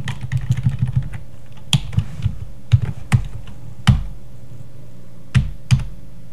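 Keystrokes on a computer keyboard: a quick run of key presses in the first second, then single clicking presses spaced about half a second to a second and a half apart.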